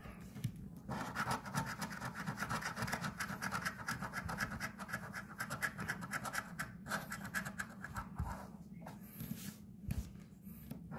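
A coin scratching the coating off a scratch-off lottery ticket in fast, rapid strokes, starting about a second in and stopping briefly near the end.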